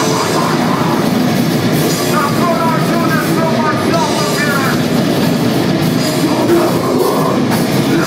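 Hardcore band playing live, loud and continuous: distorted electric guitars and a drum kit.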